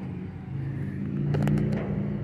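A vehicle engine running steadily at idle, a low hum that swells slightly about a second in. A few light knocks near the end.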